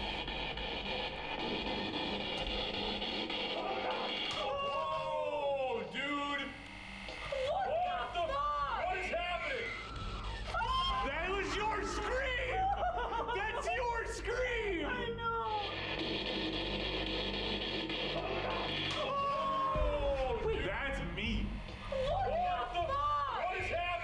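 Spirit box recording played back: radio static, then wailing, voice-like screams that rise and fall through it for several seconds, static again, and another wail near the end. The ghost hunters hear these screams as their own voices.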